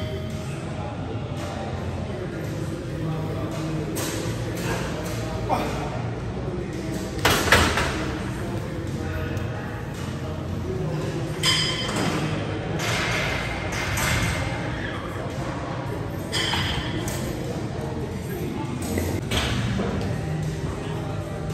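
Gym background with music, broken by several metallic clanks and thuds of barbell weights. The loudest comes about seven and a half seconds in.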